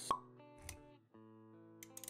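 Motion-graphics intro sound effects over background music: a sharp pop just after the start, a softer click, then held music notes coming back in about a second in, with a few light clicks near the end.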